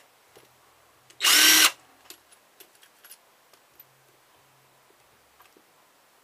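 Cordless drill-driver with a screwdriver bit run once in a short burst of about half a second on a screw in a plug, its whine rising as the motor spins up. Faint small clicks of handling before and after.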